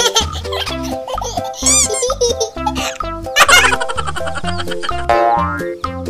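Upbeat children's background music with a steady beat, overlaid with cartoon sound effects: springy boings and sliding, wavering whistles at several points.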